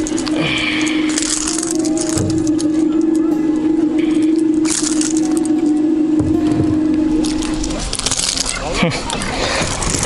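A freshly landed pike thrashing and flopping against the floor of a small aluminium boat, in rattling bursts about a second in, around five seconds and near the end. Under it a steady motor hum runs and stops about eight seconds in.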